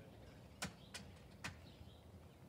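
Footsteps on an asphalt driveway: three sharp heel strikes, unevenly spaced, as people walk toward the microphone, with faint bird chirps behind.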